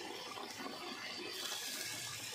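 Curry bubbling at a simmer in a metal pot: a steady, watery hiss. Near the end a brief louder rush comes as more pieces are dropped into the gravy by hand.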